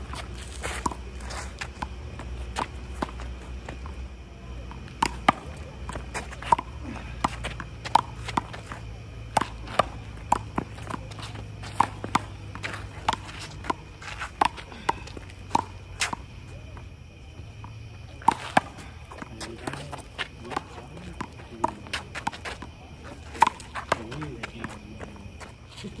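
Handball rally: a rubber handball struck by hand, smacking off a concrete wall and bouncing on the court, a string of sharp smacks about one every half second to second, with a short lull a little past halfway. Footsteps are heard between the hits.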